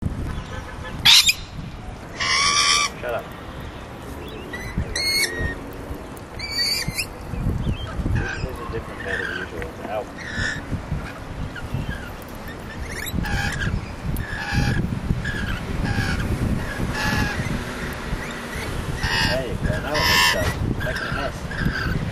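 Lorikeets calling in short, harsh screeches, about a dozen spread through the stretch, with shorter calls between them in the second half, over a low rumble.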